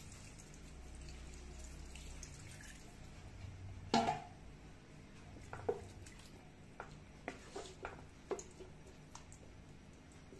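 Stock being poured into a wok of diced pork and vegetables, a faint liquid trickle. About four seconds in there is a sharp knock, then several light clicks and knocks as a wooden spatula works in the pan.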